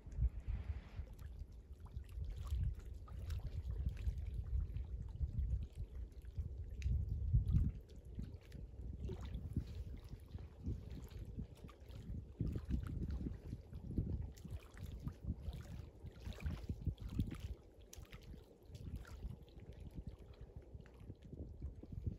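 Wind gusting on the microphone as an uneven low rumble that rises and falls, with small waves lapping at the lakeshore as faint splashy ticks.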